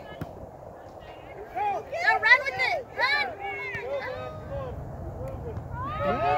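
Several short high-pitched shouts from voices some way off, as on a playing field, most between about one and a half and three seconds in, with a fainter call near the end, over a low steady outdoor background.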